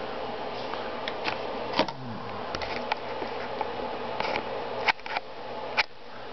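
A plastic toy VW bus record player being handled, with scattered light clicks and taps over a steady low hum.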